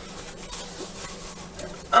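Soft rustling and rubbing of a shiny stretch-fabric lucha libre mask as it is handled and turned over in the hands.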